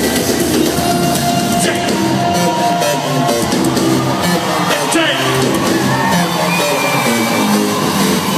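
Live concert music played loud over an arena sound system, recorded from within the audience, with voices singing or calling over it.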